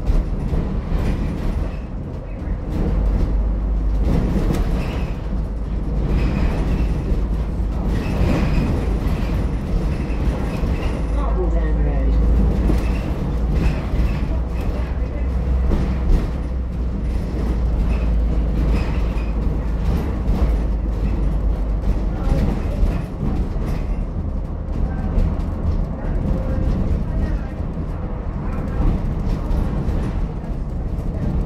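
Inside a moving ADL Enviro400H MMC hybrid double-decker bus: a steady low rumble from the BAE series-hybrid drive and the road, with a short gliding whine about eleven seconds in.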